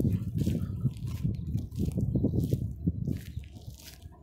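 Footsteps crunching on wet gravel, with wind rumbling on the microphone, fading near the end.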